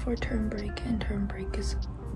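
A girl's voice talking, with background music underneath.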